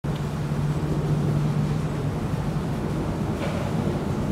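A steady low rumble with a constant low hum.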